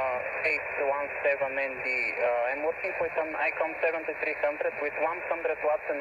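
A man's voice coming in over single-sideband shortwave radio: thin and narrow-sounding, with a light hiss behind it.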